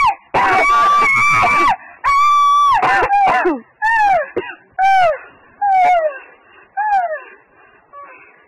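A woman screaming and wailing: long, very high cries at first, then a string of shorter falling wails about once a second that grow fainter and die away about seven seconds in.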